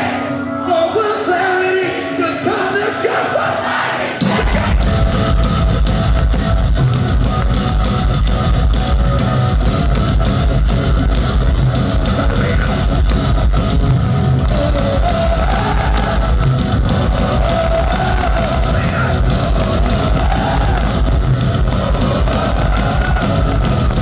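Metalcore band playing live in a large hall, heard from the crowd: singing over light backing for about four seconds, then the full band comes in suddenly with pounding drums and distorted guitars and carries on loud, with vocals over the top.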